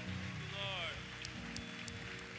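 Soft worship-band music with held chords and an electric guitar, under a faint patter of applause from the congregation.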